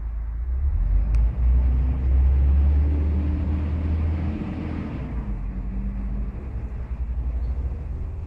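A loud low rumble that swells over the first couple of seconds and eases off about five seconds in, with a faint hum above it.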